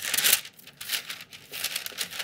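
Paper takeout bag crinkling and rustling as it is handled and items are pulled out of it, in irregular bursts that are loudest in the first half second.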